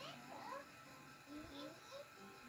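Cartoon soundtrack heard faintly through a television speaker: short, high-pitched rising calls, several times, over a soft music bed.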